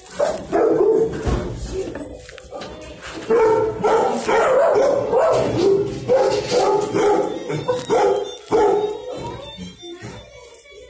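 Dogs barking repeatedly over background music.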